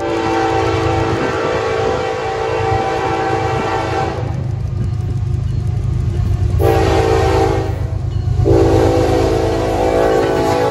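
Approaching diesel freight locomotive sounding its multi-tone air horn: a long blast of about four seconds, a short one, then another long one that is still going at the end. Beneath the horn, the locomotive's engine and wheels make a steady low rumble that grows as it nears.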